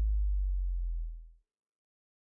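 Deep electronic sub-bass tone, the track's last bass note, sustaining and fading out about a second and a half in.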